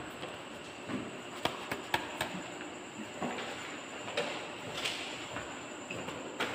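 Test papers being passed forward and collected: faint paper rustling with scattered light knocks, about half a dozen of them, at irregular intervals.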